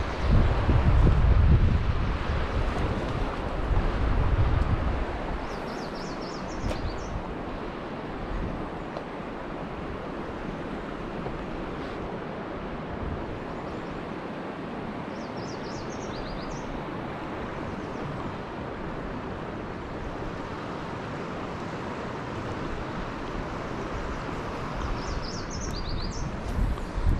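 Steady outdoor wash of wind and moving river water, with wind buffeting the microphone in a low rumble for the first few seconds. A few brief, faint high chirps come through three times.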